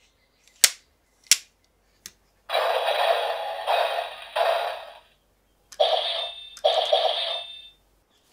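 DX Kumonoslayer toy: three sharp plastic clicks, then the toy's electronic activation sound effects play from its small built-in speaker in two bursts, the first about two and a half seconds long, the second about two seconds.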